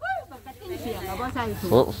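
Several people talking at once in the background, a jumble of overlapping voices over a steady low hum.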